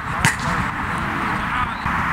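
A football struck once, a single sharp smack about a quarter second in, over a steady outdoor hiss.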